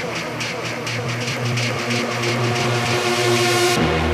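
Techno DJ mix in a build-up: fast ticking, about four a second, over held synth tones, with a hissing riser that swells and then cuts off suddenly near the end as heavy bass drops back in.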